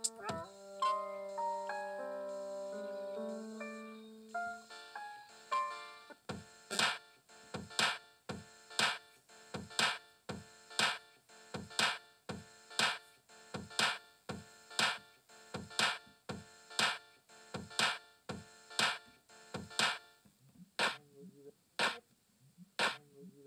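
Electronic music played on a synthesizer: sustained notes stepping through a slow melody, then a steady beat of pitched hits about once a second with lighter hits between, which drops away near the end.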